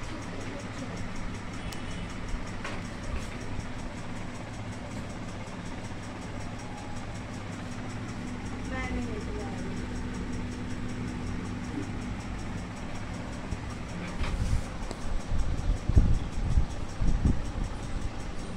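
Sony SLV-X57 four-head VHS video recorder running in play with its cover off: a steady low hum from its head drum and tape transport, with a few faint clicks. Irregular low thumps come in over the last few seconds.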